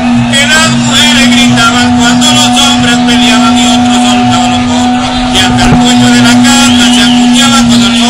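A man's voice holding one long, steady sung note into a close microphone, over background chatter.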